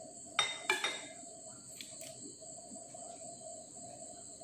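A spoon clinking against a glass mixing bowl, three sharp ringing clinks in quick succession about half a second in, followed by a couple of light clicks near two seconds.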